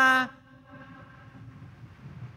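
A man's spoken word trailing off at the very start, then a pause of faint, steady room noise.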